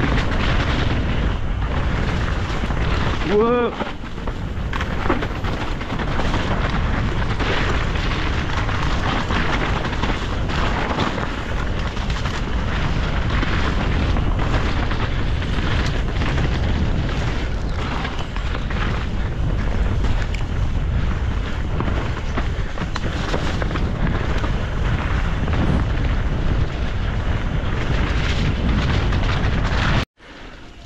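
Wind buffeting an action camera's microphone during a fast downhill mountain bike descent, with tyres running over the dirt trail and the bike rattling over bumps. A brief voiced shout from the rider comes about three and a half seconds in.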